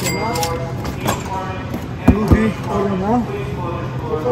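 Men talking, with a thump about two seconds in.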